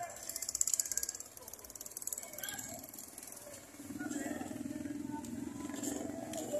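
Street ambience of background voices and motorcycle traffic, with a motorcycle engine running louder from about four seconds in.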